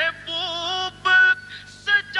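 A single high voice singing a melodic line without accompaniment, in held notes that waver slightly, broken by two short pauses.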